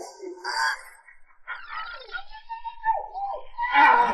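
A person's voice letting out wordless cries and exclamations, the pitch sliding up and down, in a small room.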